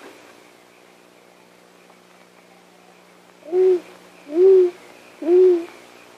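An owl hooting: three short single hoots about a second apart, starting about halfway in, over a faint steady soundtrack hum.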